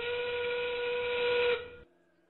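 FRC field's endgame warning: a recorded steam-train whistle, about two seconds long, that slides up in pitch as it starts, holds steady, then cuts off sharply. It signals that 30 seconds of the match remain and the endgame has begun.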